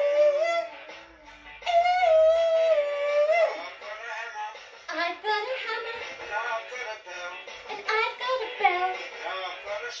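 A singing voice holds long, wavering high notes, one ending just after the start and another from about two to three and a half seconds in. From about five seconds in it moves into a quicker run of bending notes, apparently without clear words.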